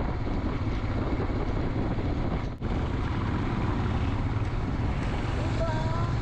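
Royal Enfield Himalayan's single-cylinder engine running under way, heard from the moving bike with wind rushing over the camera microphone. The sound cuts out briefly about two and a half seconds in.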